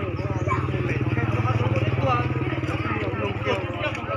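A motorcycle engine idling steadily, with voices talking over it.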